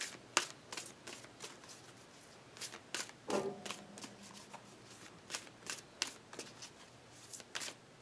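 A deck of oracle cards being shuffled by hand: quiet, irregular clicks and slaps of the cards against one another.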